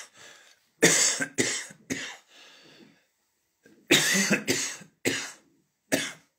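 A woman's hoarse laughter breaking into coughs. It comes in short separate bursts with pauses between them, and the longest run is about four seconds in.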